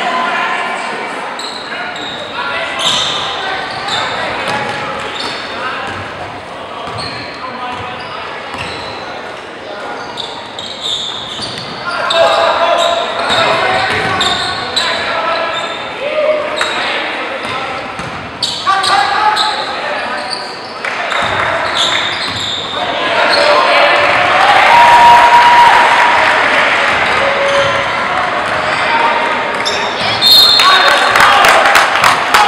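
Basketball game in a large, echoing gymnasium: the ball bouncing on the hardwood floor amid crowd voices and shouts. The crowd noise grows louder about halfway through and is loudest a few seconds before the end.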